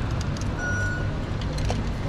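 Steady city street traffic noise, with one short electronic beep about half a second in.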